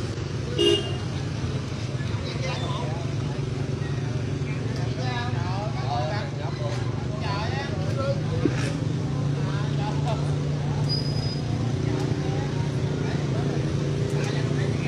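Steady road-traffic rumble, with a short vehicle horn beep about a second in, and people's voices talking over it in the middle.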